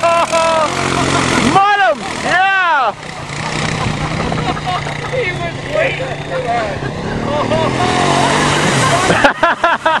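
Small off-road vehicle engine running steadily, with two long rising-and-falling shouts in the first three seconds and laughter near the end.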